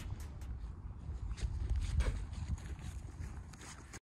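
Wind buffeting an outdoor microphone: an uneven low rumble that rises and falls, with a few faint ticks on top.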